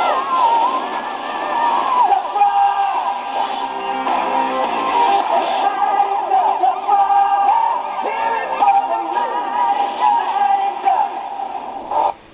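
Cartoon opening theme song playing: an up-tempo song with a sung vocal line over instruments, which ends right at the close.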